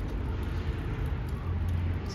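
Low, steady rumble with no distinct event, swelling briefly near the end.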